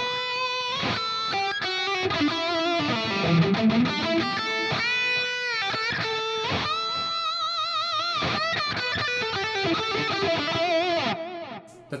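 Electric guitar lead playing through an Axe-FX II model of a Mesa Boogie Mark IIC++ amp, with chorus, ping-pong dotted-eighth delay and plate reverb: sustained notes with vibrato and bends, dying away about a second before the end.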